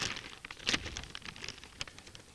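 Plastic pouch crinkling and crackling in the hands as it is pulled at to open it, in irregular sharp crackles with a few louder ones.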